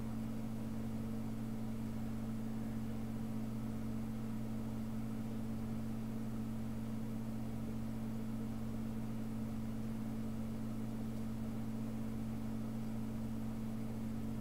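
A steady low hum, unchanging throughout, with faint hiss and no other events.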